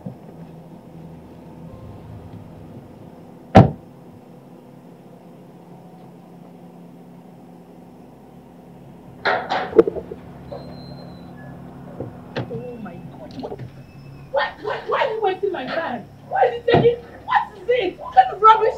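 A car door shuts with one sharp thud a few seconds in, over a steady low hum. Around halfway there are a few metallic clanks from a padlocked steel gate being unlocked, and voices rise near the end.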